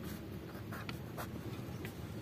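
Pen writing on notebook paper: faint scratching strokes as a word is written and a box is drawn around it.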